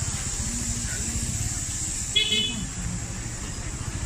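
Motorcycle engine running slowly close by, with a short, high-pitched horn honk about two seconds in.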